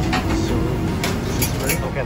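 Buffet restaurant din: many voices talking over background music, with a couple of sharp clinks about a second and a half in.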